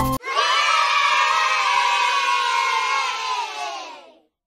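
Background music cuts off a moment in, and a group of children cheer together, many voices at once, fading out near the end.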